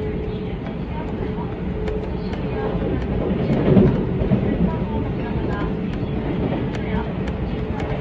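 Electric commuter train running at speed, heard from inside the carriage: a steady rumble with a held hum and faint rail clicks, swelling briefly about halfway through.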